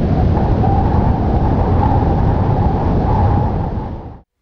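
Loud, steady mechanical rattle and whir of an old film projector sound effect, running under a vintage film countdown leader; it dies away at the very end.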